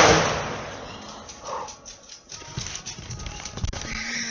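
A shotgun blast from outside: one sharp bang at the start that dies away over about a second. It is followed by a few soft knocks and rustles.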